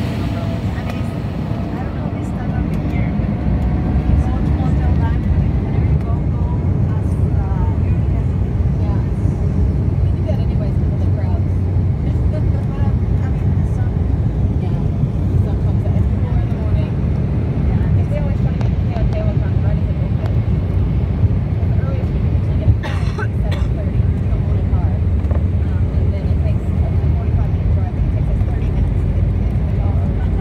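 Jet airliner cabin noise as the plane rolls along the runway for takeoff: a steady, loud low rumble from the engines and undercarriage that grows louder about four seconds in.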